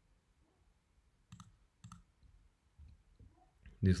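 Two sharp computer clicks about half a second apart, then a few fainter clicks: objects being picked to finish an offset command in drawing software. A man's voice starts right at the end.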